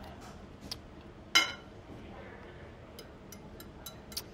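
A single clink of a metal utensil against a glass mixing bowl about a second and a half in, ringing briefly, followed by a few faint ticks near the end.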